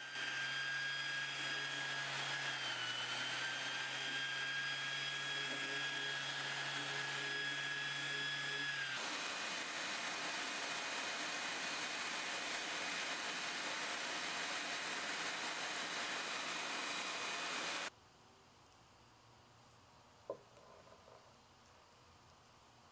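Random orbital sander running on a slow setting against cherry wood, a steady motor whine over the hiss of the pad. About nine seconds in the whine stops and a steady sanding hiss goes on until it cuts off suddenly, leaving near-quiet with one small click.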